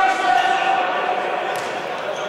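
A futsal game in a sports hall: a long shout from a player at the start, over the general hubbub of the hall, then a sharp thud of the ball being struck about one and a half seconds in.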